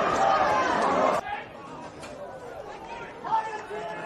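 Several voices talking over one another, loud for about the first second, then cutting off abruptly to quieter talk.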